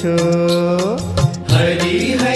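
Gujarati devotional kirtan music in a passage between sung lines: one held melodic note that bends in pitch about a second in, over a steady percussion beat.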